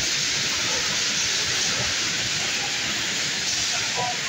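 A steady, loud hiss of noise with no distinct knocks or bangs standing out.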